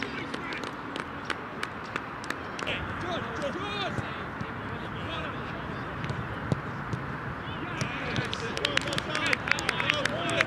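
Distant shouts and calls from players across an open football pitch, heard over a steady rushing background, with scattered sharp clicks and knocks that come thicker near the end.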